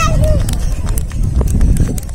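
Several children running on a concrete path: quick footsteps, with a child's short call at the start, over a steady low rumble.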